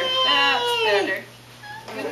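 Toddler crying, a wail that falls in pitch and breaks off about a second in, then starts again near the end.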